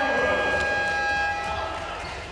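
Indoor basketball game sound: several steady held tones that slowly fade out over the low rumble of the arena, with a few faint ticks.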